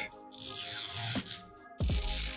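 Sticker seal being peeled off a plastic Mini Brands capsule ball: a ripping, peeling noise in two pulls, the second starting near the end, over soft background music.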